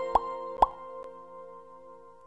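Logo-intro sound effect: two quick plops about half a second apart over a held musical chord that slowly fades away.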